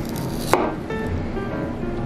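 Kitchen knife cutting through a slice of raw beef and striking the cutting board once, a sharp tap about half a second in. Background music runs underneath.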